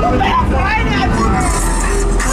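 Voices over loud music with a steady deep bass line.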